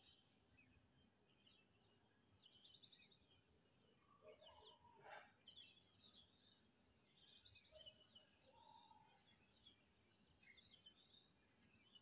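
Near silence, with faint bird chirps and trills scattered in the background.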